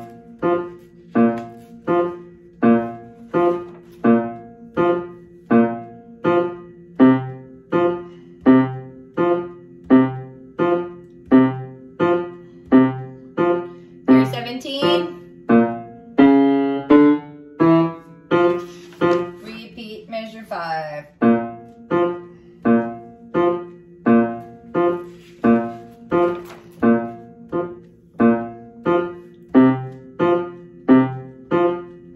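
Upright piano played in the low register, a tuba part's bass line in steady repeated notes about two a second. About halfway through, the pulse breaks for several seconds with paper rustling from a page being turned, then the steady notes resume.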